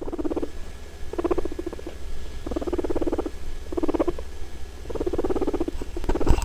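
Guinea pig purring in five short bursts, each a rapid run of pulses, over a low hum.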